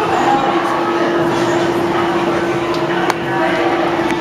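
Indistinct background chatter of children and adults in an indoor trampoline gym over a steady hum, with one sharp knock about three seconds in.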